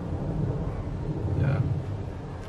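Low, uneven rumble of wind buffeting the microphone outdoors, with a short spoken 'yeah' just past the middle.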